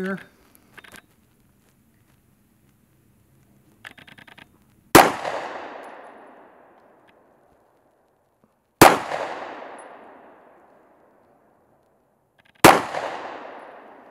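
Springfield Armory Hellcat 9mm micro-compact pistol firing three slow, aimed shots about four seconds apart. Each sharp report is followed by a long fading echo.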